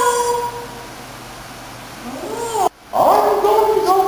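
A high-pitched voice in drawn-out calls that rise and fall in pitch, starting a little past halfway through, after a held note fades out at the very start; a brief cut in the sound comes just before the calls take off.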